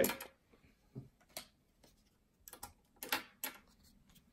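Light clicks and snaps of baseball cards being flicked through a stack in the hand: a couple of single clicks about a second in, then a quick cluster of them near the end.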